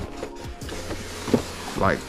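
Cardboard lid of a large boxed model-jet kit being slid and lifted off its base: a dry scraping rustle of cardboard on cardboard, with a small tap shortly before it ends.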